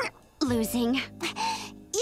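A young girl's voice crying, gasping and sobbing in wavering bursts after a brief pause, over soft background music.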